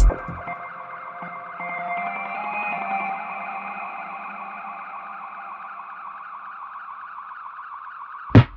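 Subway train at an underground station, a steady electric whine and hum with several tones, rising slightly a couple of seconds in as the train pulls away. Loud electronic music cuts off right at the start.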